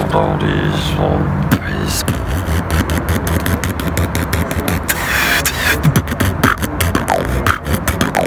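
Solo human beatboxing: a held, buzzing pitched tone for the first second and a half, then fast mouth-made percussive clicks and hisses, with a longer hiss about five seconds in and a few short sliding vocal sounds.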